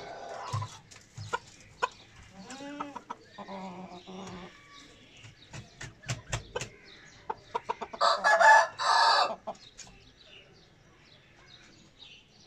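Bantam chickens clucking, with scattered sharp taps. About eight seconds in comes a loud call in two parts, the loudest sound.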